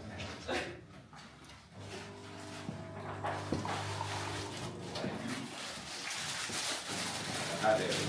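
Faint, indistinct talking in a small room, with a few light clicks and knocks of handling.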